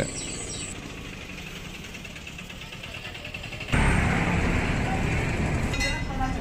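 Street noise with vehicles running. The noise steps up abruptly to a louder, fuller level a little before four seconds in.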